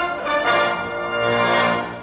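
Brass fanfare music: a few quick chord changes, then one long held chord that ends near the end.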